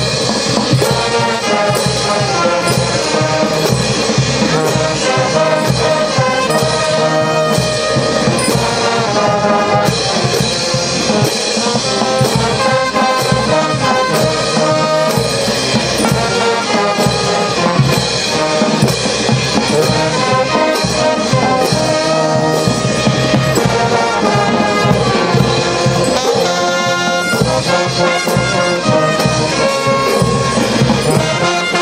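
Brass band with drums playing a lively dance tune steadily, horns carrying the melody over a drum beat.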